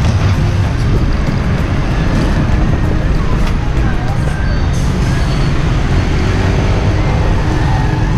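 Loud, steady road traffic noise of motorbikes and a truck passing close by, heard from a moving rider with a heavy low rumble throughout.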